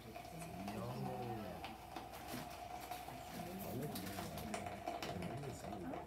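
A gummy bear burning in molten potassium chlorate, with quick faint crackles and sputters for a few seconds in the middle, as the sugar reacts. Low voices talk over it and a faint steady tone runs underneath.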